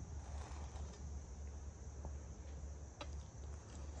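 Quiet background of a steady low hum with a faint high steady chirr like crickets, broken by a couple of light clicks as a metal spatula sets a cheeseburger patty onto its bun on a wooden board.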